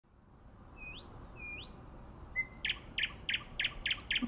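Small birds singing: two rising whistled notes and a high thin note, then a run of short chirps about three a second, over a faint hiss.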